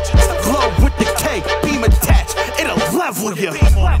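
Hip hop track: rapped vocals over a beat with deep bass hits. The bass drops out briefly about three seconds in, then comes back.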